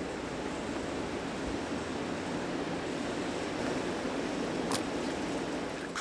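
Steady rushing of water circulating in live-seafood holding tanks, with a faint low hum underneath and a single short click about three-quarters of the way through.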